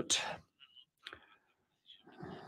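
A man's voice on a conference microphone ends a word with a breathy release, then pauses with a faint single click about a second in.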